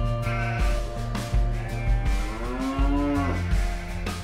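A long, drawn-out farm-animal call over background music with a steady beat. The call bends up and down in pitch and stops a little over three seconds in.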